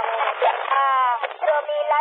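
A voice received over a PMR 446 FM walkie-talkie channel, thin and narrow like a handheld radio's speaker, with long, drawn-out slides in pitch.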